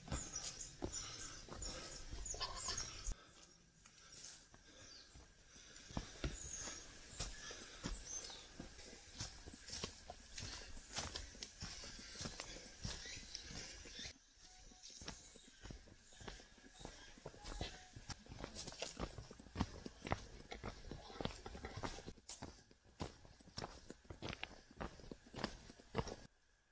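Hiking footsteps on a forest trail: boots crunching on leaf litter, twigs and loose stones in an irregular walking rhythm.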